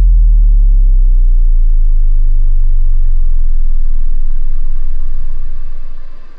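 A hardstyle track stripped down to a single very loud, deep sustained bass note, which holds steady and then fades away near the end.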